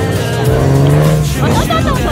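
A vehicle engine running as it drives along a dirt track, with music and a voice over it.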